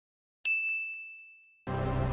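A single bright ding, a notification-bell chime sound effect, ringing out and fading over about a second. Background music comes in near the end.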